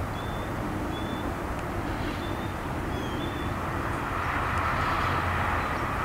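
Freight train of tank cars rolling along the track, a steady low rumble of wheels on rail that swells about four seconds in.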